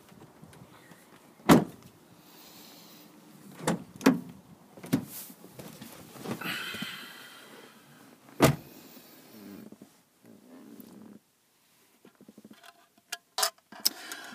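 Knocks and clicks from handling a Rover 45 hatchback's boot and interior trim. The two loudest knocks come about one and a half seconds in and about eight and a half seconds in, with a brief squeak in the middle.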